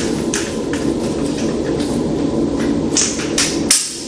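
Aluminum underarm crutch being adjusted to a shorter height: a series of sharp metal clicks and knocks as the push-button height pins and telescoping leg are worked, the loudest near the end, over a steady low hum.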